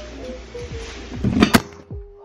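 Light background music, and about one and a half seconds in a loud knock as the camera is bumped or falls.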